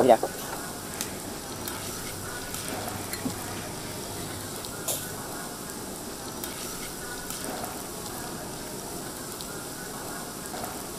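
Oysters topped with butter, fried garlic and cheese sizzling steadily in their half-shells on a charcoal grill, with a couple of faint clicks.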